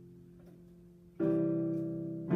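Piano playing slow sustained chords as the instrumental introduction to a song: one chord dies away, then a new chord is struck about a second in and rings on.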